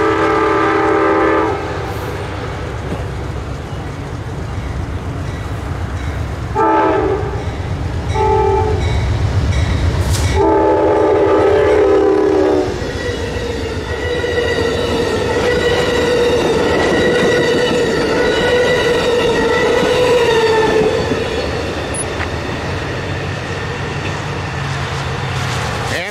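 Amtrak Capitol Limited locomotive horn sounding the grade-crossing signal: long, long, short, long, with the last blast the longest, ending about thirteen seconds in. Then the passenger train runs past with steady wheel clatter over the rails and a steady ringing tone that stops about eight seconds later, the train sound slowly fading.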